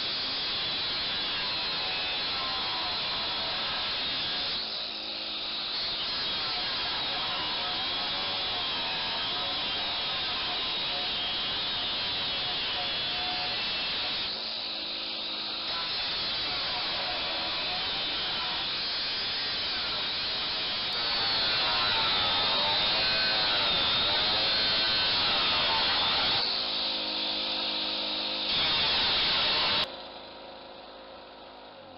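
An 800 W angle grinder with a 125 mm abrasive disc cutting through a 200-litre steel barrel, its whine rising and falling with the load, powered by a small Champion petrol generator. The cutting breaks off briefly three times, about five, fifteen and twenty-seven seconds in, and in those gaps the generator's engine runs steadily.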